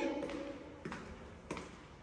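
Footsteps on a hard tiled floor in an empty, echoing room: two faint, sharp steps about two-thirds of a second apart.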